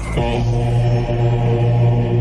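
A deep, chant-like drone held on one steady pitch for a little over two seconds, a transition sting between segments of the show.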